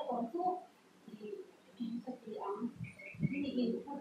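A woman speaking in short phrases with pauses, in a small room, and a bird calling in the background with a few short high rising notes about three seconds in.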